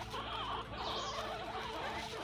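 Several guinea pigs squeaking and chattering in their hutch, a steady run of small overlapping calls.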